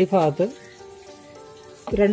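A voice speaking briefly, then a pause of about a second and a half with faint steady background music under a light hiss, before the voice starts again near the end.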